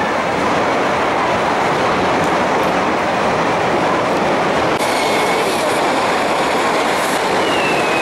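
Continuous roar of many festival rockets firing at once, a dense hissing rush with no single bangs standing out. A faint falling whistle comes in near the end.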